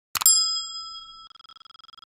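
A short click, then a single bright bell-like ding that rings and fades, pulsing quickly as it dies away: a notification-bell sound effect for a subscribe button.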